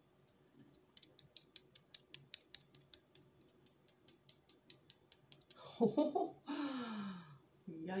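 Dry, stale tortilla wrap crackling as it is pulled open, a quick run of small sharp clicks, about four or five a second, for a few seconds; then a laugh near the end.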